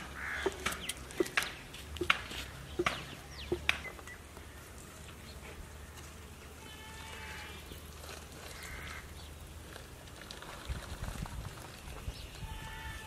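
A few drawn-out animal calls in the background, with about five sharp knocks and cracks in the first four seconds and a cluster of low thuds near the end.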